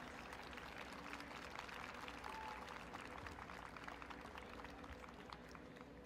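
Faint, scattered clapping from a small audience over a steady low hum of room noise.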